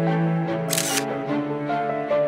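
Gentle instrumental background music, with a tablet's camera shutter sound, one short snap about three-quarters of a second in, as a photo is taken.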